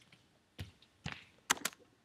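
Four short knocks and clicks of someone stepping up to and handling the recording device, the last two close together and the loudest.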